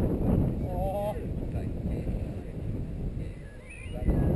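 Wind buffeting the microphone as a steady low rumble, with a short wavering call about a second in and a few brief high chirps near the end.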